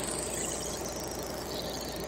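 Steady high chirring of crickets in a night-time ambience bed under the track, with a faint high tone sliding slowly downward near the end.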